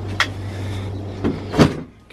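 Car bonnet being pushed shut against newly fitted gas struts: a small click, then a louder knock about a second and a half in as it comes down onto the catch without latching fully.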